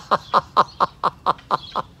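A man laughing heartily in a steady run of 'ha' bursts, about four a second, each dropping in pitch, as he lets out a held breath in a laughter yoga exercise.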